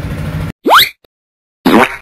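A low steady engine idling cuts off suddenly about half a second in. Two short rising whoosh sound effects from the end-card animation follow, each well under half a second and louder than the idle.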